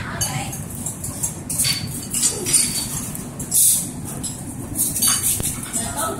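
Water drops falling into a puddle: scattered sharp plinks over a steady wash of noise, with a louder swell a little past halfway.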